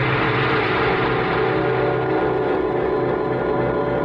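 A sustained radio-drama sound-effect or music cue: a dense ringing chord of many steady tones that holds at an even, fairly loud level without changing.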